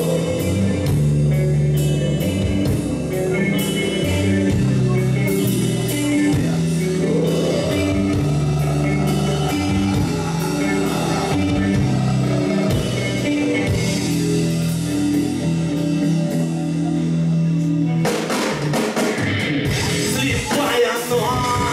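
Live rock band playing a song on electric guitar, bass guitar and drum kit. Near the end the held bass notes drop away and the drums and cymbals come forward.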